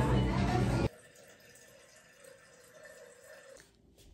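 Restaurant din of background music and voices that cuts off abruptly about a second in. Then there is only a faint quiet-room hush.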